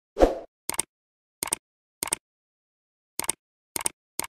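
A typing sound effect: a short pop, then five keystroke clicks, each a quick double click, coming at an uneven pace as five characters are typed into a search box.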